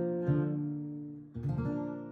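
Capoed acoustic guitar played fingerstyle, ending the piece: a note about a quarter second in fades, then a final chord about one and a half seconds in rings out and dies away.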